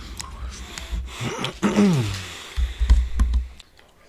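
A man's mouth sounds while he chews bubble gum: wet clicks, and a short hum falling in pitch about one and a half seconds in. Under them, stretches of low rumbling thuds stop shortly before the end.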